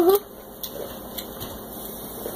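A child's short 'mm-hmm', then quiet room sound with a couple of faint crackles from a crinkly bag of Cheetos being handled and chips being chewed.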